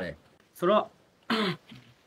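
Only speech: a man talking in short phrases with pauses between them.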